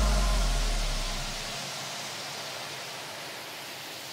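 Electronic dance music transition. A deep sub-bass note fades out over the first second and a half, under a steady wash of synthesized white noise (a noise sweep) that thins as the track drops away.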